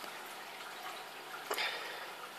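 Steady sound of water running in a reef aquarium, with a brief louder rush of water about one and a half seconds in.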